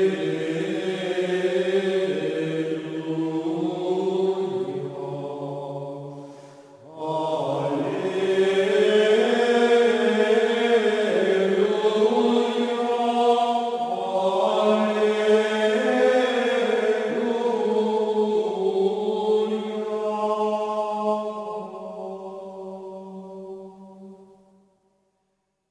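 Music of chanting voices holding long notes that step slowly from pitch to pitch. The chant breaks off about six seconds in, resumes a second later, and fades near the end.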